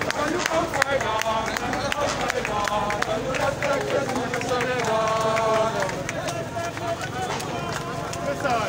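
Marching street crowd: many voices shouting and chanting over one another, with footsteps and scattered sharp taps throughout.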